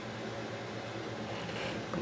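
Steady, fairly quiet room background noise: an even hiss with a faint low hum, the sound of a fan or air-conditioning unit running.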